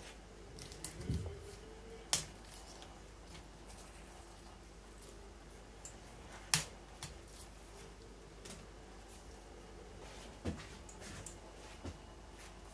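Scattered faint crackles and rustles of dry pineapple leaves being pulled off a pineapple crown by hand, with a few sharper snaps about a second in, about two seconds in, midway and near the end, over quiet room tone.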